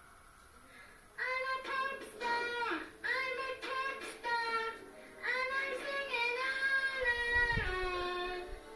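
A young girl singing into a toy microphone, starting about a second in, with several long held notes.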